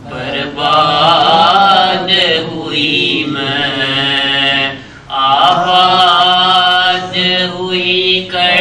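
A man chanting an Urdu noha, a Shia lament, solo and unaccompanied into a microphone, in long, drawn-out melodic lines. He breaks for breath about five seconds in.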